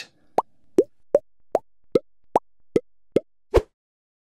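Intro sound effect: a run of nine short, evenly spaced pops, about two and a half a second, each dropping quickly in pitch, the last one deeper.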